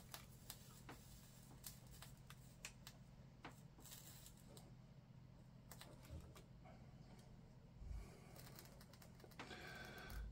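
Near silence: faint, scattered light clicks and taps from hands working at N-scale model railway track, over a low steady hum, with a soft low thump about eight seconds in.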